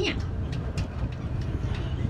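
Steady low rumble of a safari tour vehicle on the move, engine and rolling noise heard from on board.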